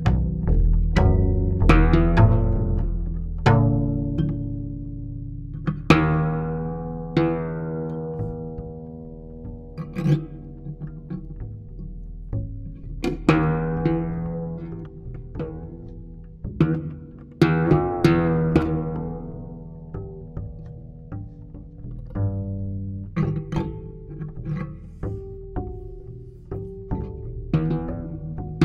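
Guitar and double bass playing together: plucked notes that ring and die away, over low sustained bass tones.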